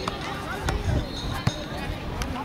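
Soccer ball being juggled on foot and thigh: a few dull thumps as it is struck, the loudest about one and a half seconds in, with voices chattering in the background.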